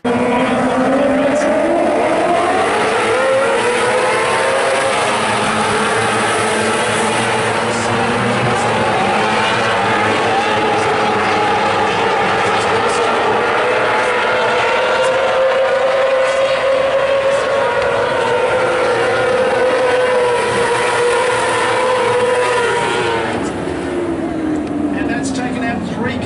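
A pack of Formula 500 speedway cars racing on a dirt oval, their engines rising in pitch over the first few seconds as the field accelerates off the start, then running hard and steady as they lap. The pitch drops near the end as the cars back off.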